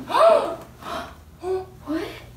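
A woman gasping in surprise: a loud, rising-and-falling 'oh!' of astonishment, then two shorter gasps near the end.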